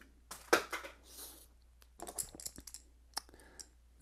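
Small clicks and taps of watch-repair tools being handled on a desk mat, the sharpest about half a second in, then a brief rustle and a cluster of lighter clicks in the middle.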